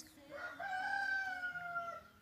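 A rooster crowing once, a single call of about a second and a half that rises at the start, holds, and slowly falls away at the end.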